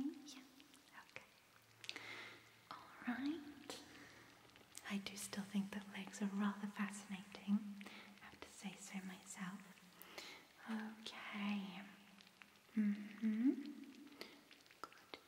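A woman whispering softly, with long low 'mm' sounds held on one pitch through much of the middle and a couple of short rising 'mm-hmm'-like glides.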